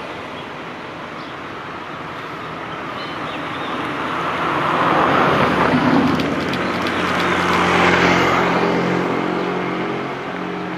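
Motorcycle riding slowly past close by, its engine growing louder to a peak about halfway through and again near the end.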